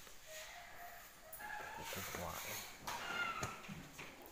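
Indistinct voices in a hall, with several short, high-pitched calls.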